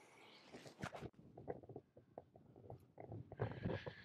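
Golf 9-iron striking a ball off turf: a sharp click just before a second in, followed by faint scattered small clicks and rustles.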